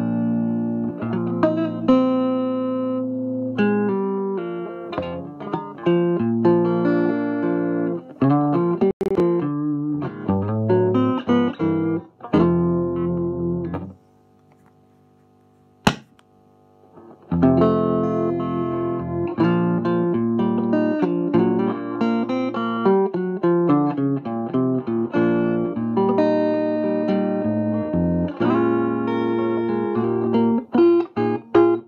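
Guitar played through a 1963 Egmond V1020 single-ended EL84 tube amp, first with the preamp plate at about 70 volts. The playing stops about fourteen seconds in, and a single sharp click is heard as the plate resistor is changed. Playing resumes with the preamp plate at about 140 volts, which gives a bit more volume, bass and definition, though the difference is barely audible at this volume.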